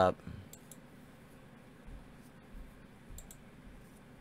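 Several faint computer mouse clicks, scattered singly and in quick pairs, over quiet room tone.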